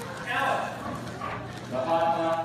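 Indistinct voices of people talking and exclaiming in a crowded hall, with soft scattered knocks under them.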